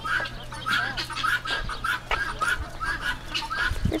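A group of birds calling over and over, short calls about three a second.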